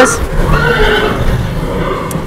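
A horse whinnies once, a call lasting about a second.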